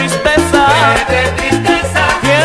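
Salsa music playing: an instrumental stretch with a steady repeating bass line under a melody that slides up and down in pitch.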